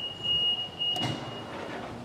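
Telescoping truck-loading conveyor running as it moves out, with a steady high tone over the mechanism that stops about a second and a half in, just after a click.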